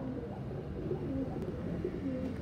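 Feral pigeons cooing: a run of soft, low, short notes.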